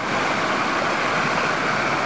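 Small waterfall pouring over rocks close to the microphone: a steady rush of splashing water.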